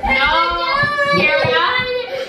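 Toddler crying: long, high-pitched wails that waver and bend in pitch.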